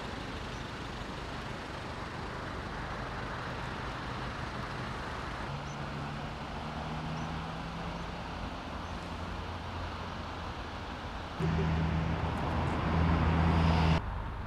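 A motor vehicle's engine humming steadily under a constant rushing noise, the hum growing clearly louder about eleven seconds in.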